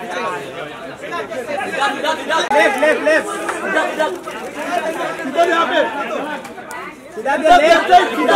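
Crowd chatter: many voices talking over one another at once, with no single voice standing out.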